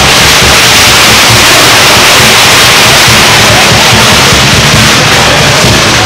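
Chinese dragon dance percussion band playing at full volume: a continuous wash of clashing cymbals and gongs over drum beats, loud enough to overload the recording.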